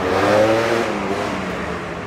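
A car passing close by: a steady engine hum and tyre noise that swell to a peak about half a second in, with the engine note bending up and then down, then slowly fading.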